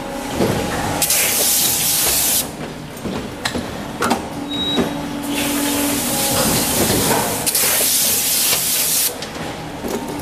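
Die-casting machine work cycle with compressed air: two long bursts of loud hiss about six seconds apart, from an air or spray wand blown into the die. Between the bursts there is a steady machine hum and a few clanks and knocks.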